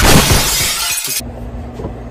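Glass-shattering sound effect: a loud crash of breaking glass lasting about a second, cutting off suddenly, then a faint low hum.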